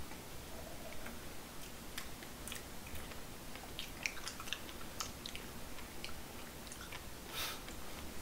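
Faint chewing and small wet mouth clicks from people eating strawberries and chocolate cake.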